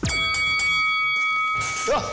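A boxing ring bell struck once, its ringing tone holding for about a second and a half before fading, signalling the start of another round. A voice shouts "ya" near the end.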